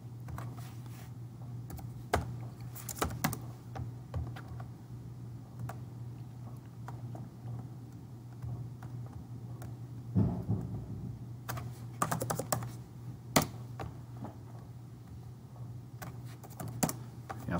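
Typing on a computer keyboard: scattered keystrokes with a couple of quick runs of clicks, over a steady low hum.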